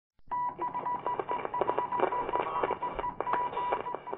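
Thin, phone-line-sounding electronic beeping: a high steady beep that breaks on and off many times, with clicks and crackle under it.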